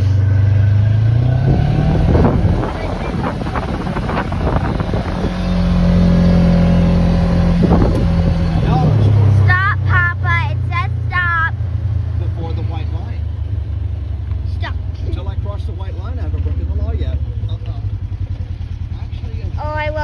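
Side-by-side four-wheeler's engine running while driving, picking up revs about two seconds in, holding higher revs for a few seconds, then dropping back to a lower steady pull. A child laughs partway through.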